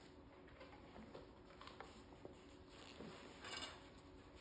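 Near silence with faint, scattered clicks of small aluminium parts being handled on a steel welding table, and a brief rustle near the end.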